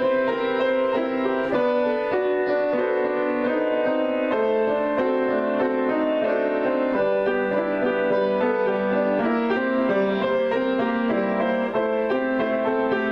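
Solo grand piano playing an improvised piece, a continuous flow of overlapping notes mostly in the middle register, at an even loudness.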